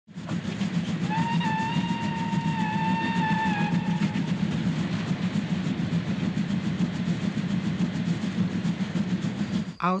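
Steam locomotive running with a steady, even rhythm, and one long whistle blast from about a second in to about four seconds in.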